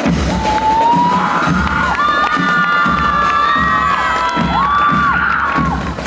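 Audience cheering and shrieking, several long high cries overlapping, over the marching band's bass drums beating underneath.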